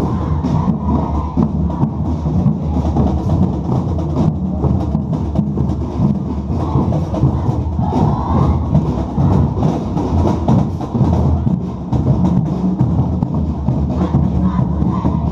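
A school marching band (fanfarra) playing a march, led by drums with a steady bass-drum beat.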